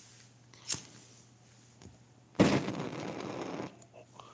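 A sharp click just under a second in, then a hard, noisy breath blown out close to the microphone for over a second.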